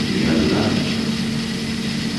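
Steady hum and hiss of a low-quality 1970s amateur recording, a continuous low drone under an even hiss.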